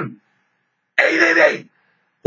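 A man clears his throat once, about a second in, a short rough sound lasting under a second.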